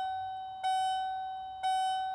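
1996 Ford Mustang's dashboard warning chime sounding with the ignition on and the engine off: a single-pitched electronic bong, struck about once a second, each note fading before the next.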